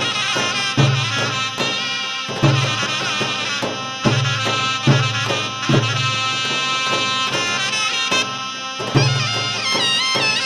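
Zeybek folk music: a shrill reed wind instrument holds an ornamented melody over slow, heavy bass-drum strokes, a little under one a second.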